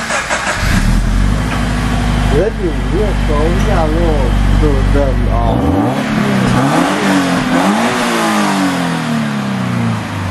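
Subaru BRZ's 2.0-litre flat-four engine starting about half a second in on a cold start and running at a steady fast idle. From about halfway it is revved lightly, the pitch rising and falling a couple of times and then dropping back near the end; a pretty quiet exhaust note.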